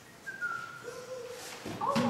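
Whistling: a short high note that slides slightly down, then a lower note held for about a second. Near the end there is a brief knock and a voice starts speaking.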